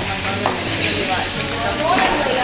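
Food sizzling steadily on a commercial kitchen flat-top griddle, over a low steady hum.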